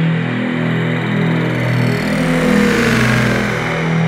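Electronic synth intro: a sustained low synth chord, with a rising sweep and a deep rumble swelling over the last two seconds.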